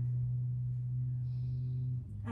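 A steady, low sustained drone note, held without a break like a pad or drone in ambient background music.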